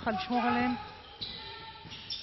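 A basketball being dribbled on an indoor hardwood court, with short bounces under a commentator's voice that stops a little under a second in.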